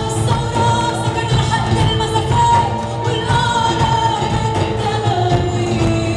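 Live concert performance: a woman singing, holding long notes, with a backing band.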